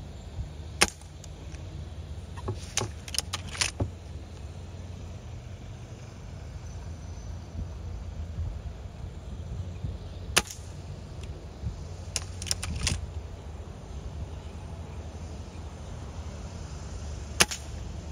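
Air rifle firing: three sharp cracks, about a second in, about ten seconds in and near the end, with shorter clusters of clicks between them, over a steady low rumble.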